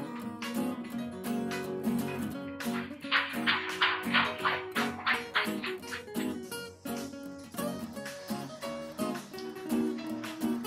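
Background music with strummed guitar and a steady beat, with a brighter rattling passage about three seconds in.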